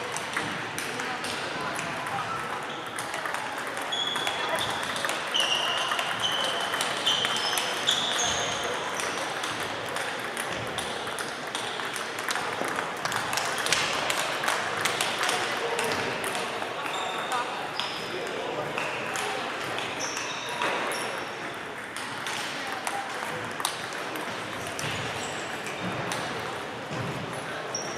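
Table tennis balls clicking off paddles and tables in irregular rallies, several matches playing at once, over a murmur of voices.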